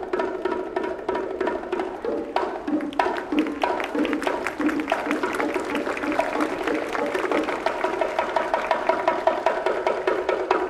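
Pair of bongos played solo with bare hands: a fast, continuous run of sharp drum strikes.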